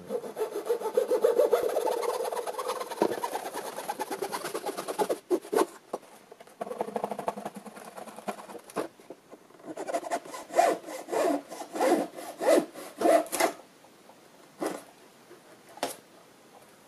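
A fine-toothed razor saw cutting through the covered wooden wing centre section of a model aircraft: a fast, continuous run of strokes for the first five seconds, then after a lull several short stop-start bursts of strokes. The footage is sped up three times, so the strokes come very quickly.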